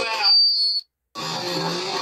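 Voices and chatter of a bar's open-mic night, with a brief steady high-pitched tone cutting in early. The sound then drops out completely for about a quarter of a second, and the music and chatter come back.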